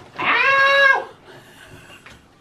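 A young man's high-pitched pained cry, held for under a second, as his hair is pulled tight for braiding; he is tender-headed.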